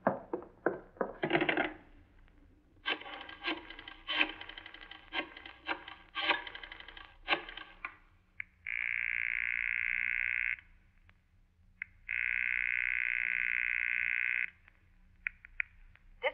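Radio sound effect of a telephone call: a few knocks as the receiver is picked up, a rotary dial clicking for about five seconds, then two long buzzing rings on the line, each about two seconds, with a short gap between.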